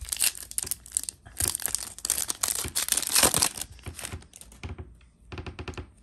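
Foil wrapper of a trading-card pack being torn open and crinkled by hand, dense crackling for about three and a half seconds, then fainter, sparser crackles as the pack is handled.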